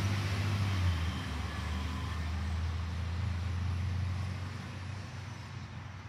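Garbage truck engine running with a steady low drone as the truck pulls away down the street, fading over the last second or two.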